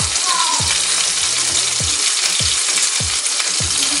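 Creamy garlic sauce with spinach and mozzarella cooking in a frying pan, giving a steady sizzle with a soft low blip about every half second as it bubbles.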